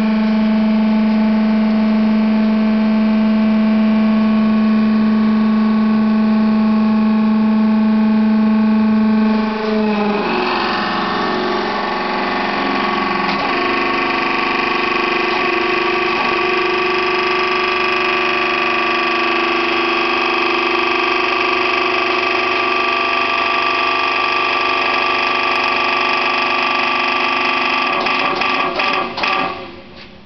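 Hydraulic pump motor of a Cemilusta hot press running with a loud, steady whine; about ten seconds in its tone shifts and settles again, and near the end it falters and cuts off.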